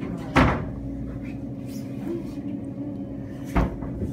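Two sharp thumps, one about half a second in and a louder-looking one near the end, over a steady low hum.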